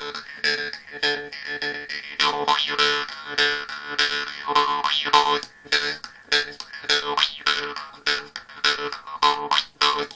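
Jaw harp (vargan) played by mouth: a steady twanging drone on one pitch, plucked rhythmically several times a second, with the overtones above it shifting up and down as the mouth changes shape to make a melody.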